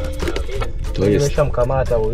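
Background music ends right at the start, then a person's voice speaks from about a second in.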